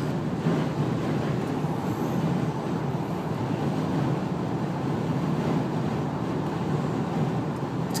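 Steady drone of a car driving at highway speed, heard from inside the cabin: engine and tyre road noise.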